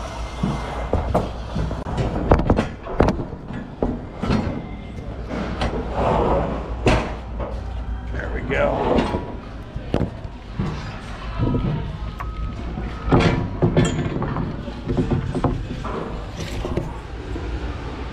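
Wooden 2x6 boards knocking and clattering against each other as they are stacked onto a flat lumber cart. Irregular sharp knocks sound over a steady low hum, with indistinct voices in between.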